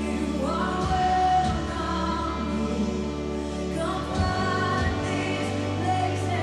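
Recorded Christian worship song: sung vocals over sustained low instrumental notes, with rising vocal phrases about half a second in and again near four seconds in.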